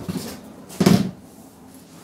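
Household bumps at a kitchen counter: a light knock at the start and a louder short bump about a second in, like a kitchen cupboard door being opened or shut.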